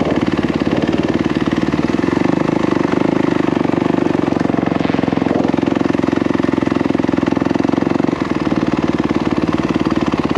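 Dirt bike's single-cylinder engine running steadily at low revs as the bike is ridden slowly, heard from on board, with a brief dip in level a little after eight seconds.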